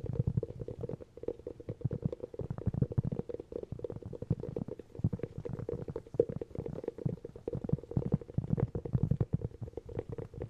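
Fingertips tapping and drumming on hollow cork close to the microphones: a dense, continuous run of quick, soft taps with a hollow, low resonance.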